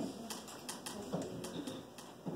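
An irregular run of light, sharp clicks and taps, about five or six a second, over faint murmured voices.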